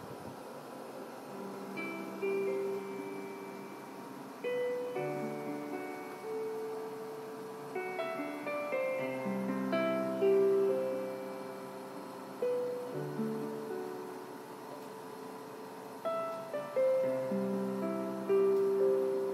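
Slow, quiet piano music: notes and chords struck every second or two and left to ring.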